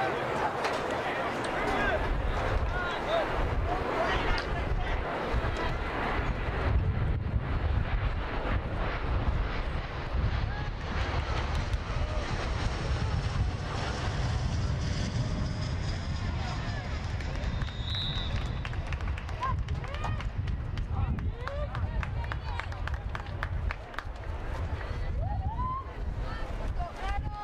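Outdoor football game sound: wind rumbling on the microphone under distant shouting and talk from players and onlookers, with a short, high referee's whistle blast about eighteen seconds in.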